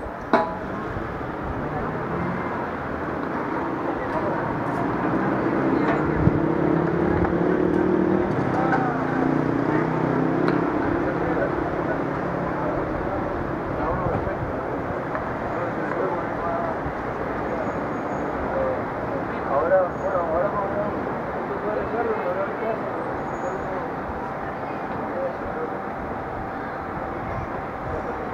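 Street traffic going by, one vehicle passing loudest about eight seconds in, with indistinct voices nearby.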